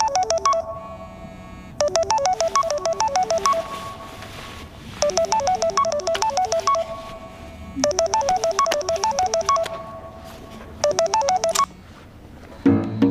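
Smartphone alarm going off: a short, bright melodic ringtone phrase repeating about every three seconds, stopping suddenly near the end.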